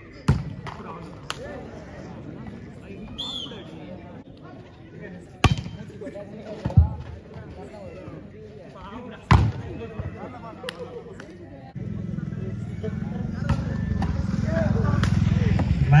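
Volleyball rally: about six sharp slaps of hands and arms on the ball, spread over the first eleven seconds, over crowd chatter. From about twelve seconds in, the crowd noise swells steadily as the point, which wins the match, ends.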